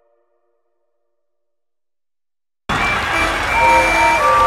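Silence after a song has ended. About two and a half seconds in, animated steam engines' whistles start suddenly: several steady tones at different pitches over a loud rushing noise.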